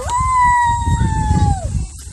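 A child's single long, high-pitched squeal, starting sharply, held at a steady pitch for about a second and a half and dropping off at the end.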